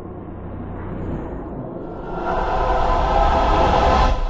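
Cinematic logo-intro sound design: a low rumble that swells louder about halfway through, with a sustained ringing tone building over it.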